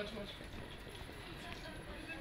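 Quiet room with faint, murmured voices; the water being poured is not clearly heard.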